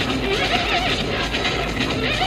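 Steady road and wind noise inside a car cruising at freeway speed, with short wavering high-pitched squeals over it.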